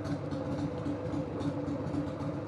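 1999 Harley-Davidson Sportster 1200's air-cooled V-twin idling steadily.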